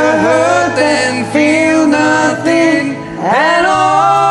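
A man sings long, bending notes over a karaoke backing track. Near the end there is a short dip, then a quick upward slide into a long held note.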